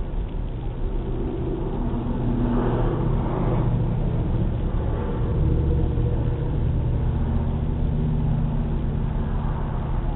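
Street traffic: cars driving past, with the loudest pass swelling and fading a few seconds in, over a steady low engine hum.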